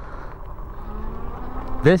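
Low wind rumble on the microphone and fat tyres rolling over pavement as the WindOne K2 e-bike rides along. A faint, slightly rising whine from its 500 W hub motor comes in about halfway through.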